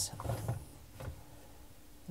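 Plastic parts of a dishwasher's lower spray arm mount handled and turned with needle-nose pliers: a few faint clicks and scrapes in the first second, then little sound.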